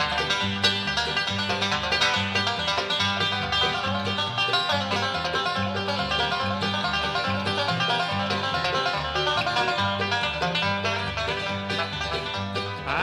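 Bluegrass band playing an instrumental break between verses: a rapid banjo lead over strummed guitar and a walking bass line.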